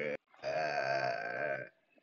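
A person's low voice giving one long, drawn-out groan lasting about a second, mimicking a ghost's "grooooan".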